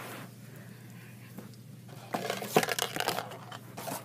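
Small cardboard Lego set box being picked up and handled: a cluster of scrapes and taps starting about two seconds in and lasting about a second and a half.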